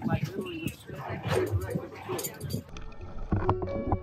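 People talking on a dive boat, then about three seconds in the sound cuts abruptly to background music with steady held notes.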